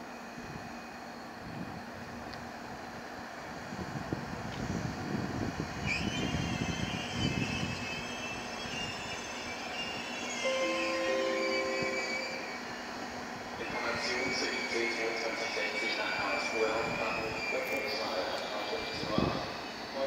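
Slow-moving train wheels squealing on the rails, a wavering high-pitched squeal over a low rumble, heard in two stretches about six and fourteen seconds in. It comes from an electric locomotive creeping through the station tracks during a locomotive change.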